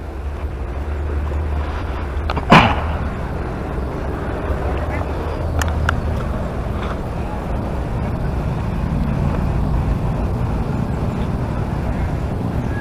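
Outdoor handling and wind noise on a moving camera's microphone: a steady low rumble, one sharp knock about two and a half seconds in, and a few lighter clicks later.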